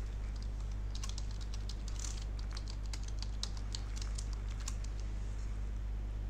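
A computer keyboard being typed on: a quick run of key clicks entering a password, from about a second in until near the end, over a steady low hum.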